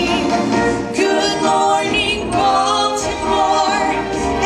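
A woman singing into a handheld microphone, amplified through the hall's sound system, holding several long notes.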